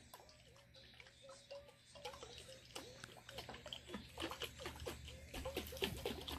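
Heavy cream sloshing in a lidded glass mason jar as it is shaken by hand, with faint splashing and light knocks of liquid against glass and lid. The sounds start about a second in and grow louder and more frequent.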